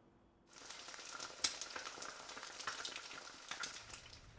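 A ground-beef patty sizzling in a frying pan over an open fire: a steady hiss with many small crackles that starts suddenly about half a second in.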